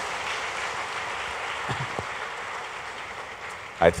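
Audience applauding steadily, easing off near the end.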